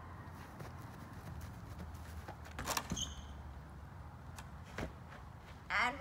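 A few dull thuds and footfalls, clustered about two and a half seconds in and again near five seconds, from a person running on grass and planting a foot against a wooden fence, over a low steady outdoor rumble.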